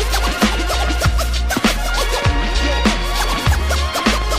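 Hip hop beat with turntable scratching: short back-and-forth record sweeps over heavy bass and steady drum hits.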